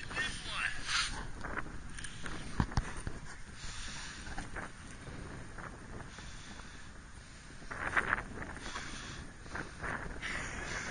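Indistinct voices, faint and brief, over wind noise on the microphone, with a sharp knock about two and a half seconds in.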